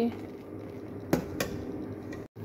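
A metal ladle knocks twice against the side of a kadhai of melted jaggery syrup: two sharp clicks about a quarter second apart, over a low steady hum.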